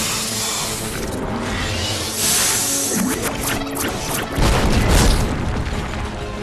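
Dramatic action music under cartoon battle sound effects: crashing impacts in the middle, then a heavy boom about four and a half seconds in.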